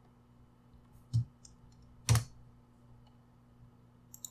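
Two sharp computer keyboard keystrokes about a second apart, with a few faint key clicks around them.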